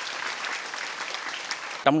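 A large seated crowd of students applauding, with steady, dense clapping.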